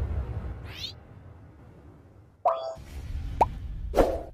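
Intro sound effects: a loud hit fading away, a short rising whoosh under a second in, then a sudden pop about halfway through, followed by short tonal effects and another hit at the end.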